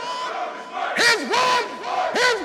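Group of voices shouting in a rhythmic chant over a steady held tone, a soundtrack to a title sequence. The shouts drop back at first and come in strongly again about a second in, several short calls in quick succession.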